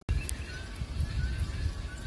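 A click as a new recording starts, then an uneven low rumble on a phone microphone outdoors, the buffeting of wind and handling.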